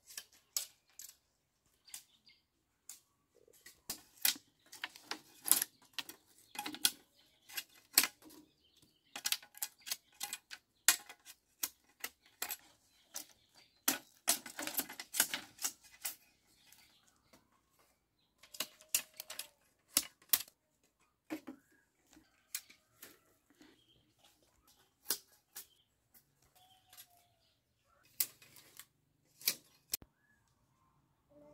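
Irregular hard clacks and knocks of bamboo poles and split bamboo strips being handled and struck against each other, in quick clusters with short pauses.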